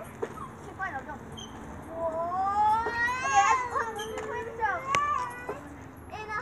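A child's voice in a long, drawn-out wail that glides up and down in pitch for about three seconds, after a few short bits of voice at the start.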